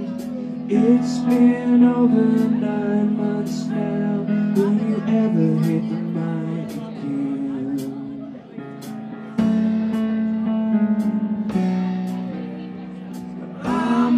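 A live band playing a song, with guitar prominent. The music thins out about eight and a half seconds in and comes back in full about a second later.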